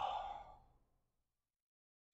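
A man's single breathy sigh that fades away within the first second.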